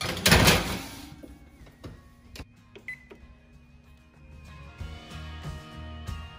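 Metal baking tray scraping and clattering onto the oven rack at the start, followed by a few sharp clicks and knocks. Background music comes up in the second half.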